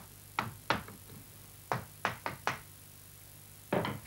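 About eight sharp, irregularly spaced taps of an upholsterer's hammer, tacking upholstery to a chair.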